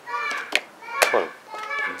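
Two sharp clacks about half a second apart from a fast blitz chess game, plastic pieces and the chess clock being struck in quick succession, with voices talking over them.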